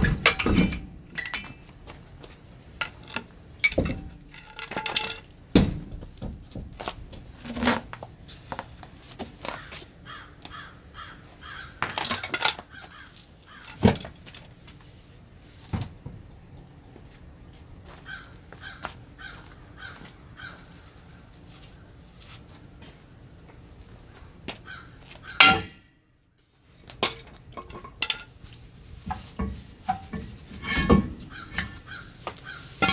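Scattered metal clanks and knocks from a pry bar and tools working on a heavy truck's rear wheel end and brake drum, with bird calls, crow-like caws, at times.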